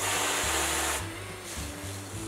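Aerosol can of whipped topping spraying onto a plate: a strong hiss for about a second, then weaker, sputtering on as the cream piles up.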